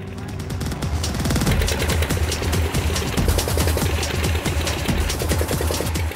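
Engine on an offshore tin-mining raft running, a rapid, even knocking over a low drone.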